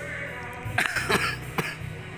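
A person clearing their throat with a few short, rough coughs about a second in, over steady background music.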